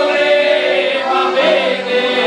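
A group of men and women singing a song together to an accordion, the voices over the accordion's held chords.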